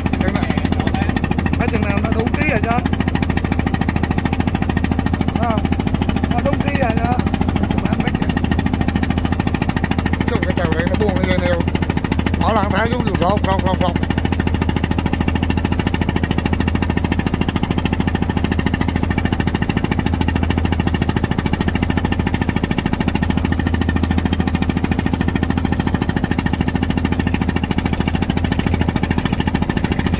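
A small wooden boat's engine running steadily under way, a constant low drone that does not change. Faint voices come and go over it, clearest about twelve to fourteen seconds in.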